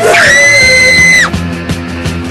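A loud, high-pitched scream that rises at the start, holds for about a second and cuts off suddenly, over background music with a steady beat.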